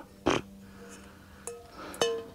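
A short rub of paper towel on a small metal camping pan, then two light metal clinks with a brief ring, the second near the end, as the pan is handled.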